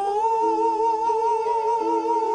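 Male voices singing one long held high note with a gentle vibrato, entering right at the start, over steady sustained accompanying notes.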